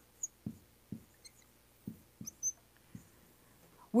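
Dry-erase marker writing on a whiteboard: a quick series of short strokes and taps with a few faint squeaks.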